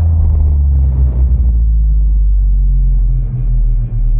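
A loud, deep bass rumble held steady, a trailer sound-design boom sustained under the title card, with only brief dips near the end.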